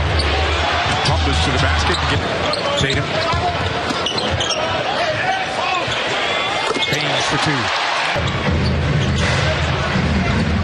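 Basketball dribbled on a hardwood court amid steady arena crowd noise in a large, echoing hall, with a commentator's voice briefly near the end.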